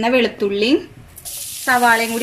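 Chopped onion hitting hot oil in a frying pan: a sudden sizzle starts a little past one second in and keeps going as the onion is tipped in.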